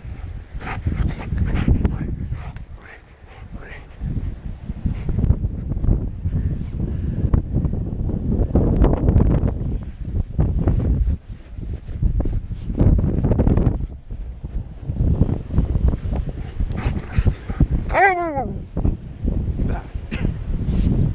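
Gloved hands digging and scooping snow, with crunching and scuffing against the camera. Near the end an Alaskan Malamute gives a short wavering whine that falls in pitch.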